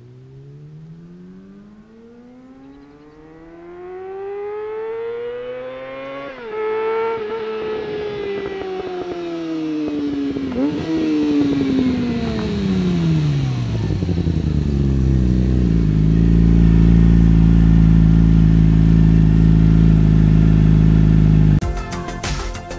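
Yamaha YZF-R6 599 cc inline-four sport bike in the distance, revs climbing for about six seconds, then a quick dip as it shifts gear. The engine note then falls away as it slows, with a brief blip about ten seconds in, growing louder as it comes closer, and settles into a loud steady low-revving run close by near the end.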